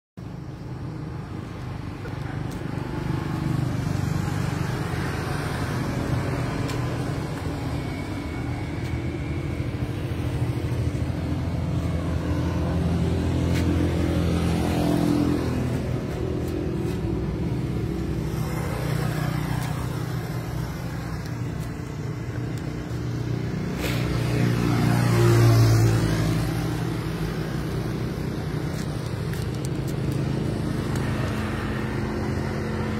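Road traffic: a steady engine rumble with vehicles passing by, the loudest pass about twenty-five seconds in.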